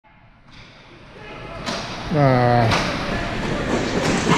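Inline hockey play in a large hall: two sharp clacks of stick and puck, about a second and a half and nearly three seconds in, with a man's drawn-out shout of "ah" between them, over noise from the game that grows louder.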